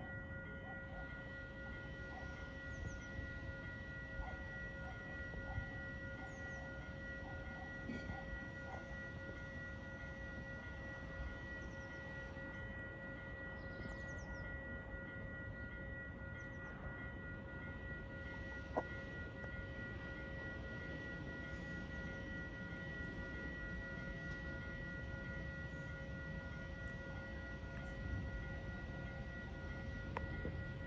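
Distant electric multiple-unit train approaching along the line: a low rumble with a steady, high multi-tone ringing whine held throughout, growing slightly louder near the end. A few faint bird chirps and one sharp click about two-thirds of the way in.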